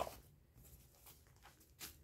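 Faint rustling of a disposable adult diaper's plastic-backed shell being handled, with a brief crinkle near the end.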